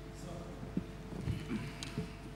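A few soft, scattered knocks and clicks from a chair and desk as a man sits down, over a low steady hum.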